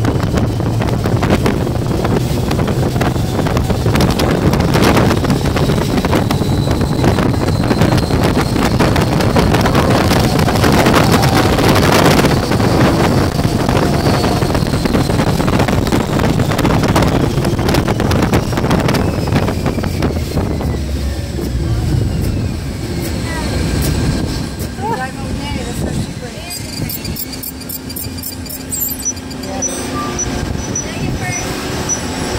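Loud wind rush and buffeting on the microphone from riding in an open-topped ride vehicle at high speed on a banked track, with the vehicle's running noise underneath. It dies down about three quarters of the way through as the car slows.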